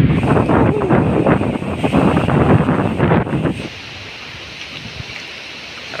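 Strong storm wind gusting through trees and buffeting the microphone. It drops to a quieter, steady rush about three and a half seconds in.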